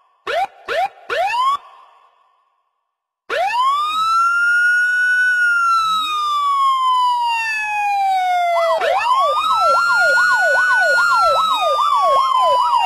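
Three short rising chirps, then a moment of silence, then a loud siren: a wail that rises, holds and slowly falls, then switches to a fast yelp going up and down a few times a second.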